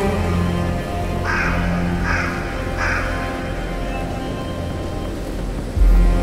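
Slow, dark background music with sustained low tones. About a second in, a crow caws three times, under a second apart. A low boom comes just before the end.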